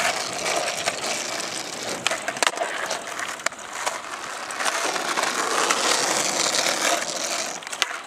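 Skateboard wheels rolling over rough asphalt, a steady gritty rumble broken by scattered small clicks and knocks. There are a few sharper clacks near the end as the board is popped into a trick.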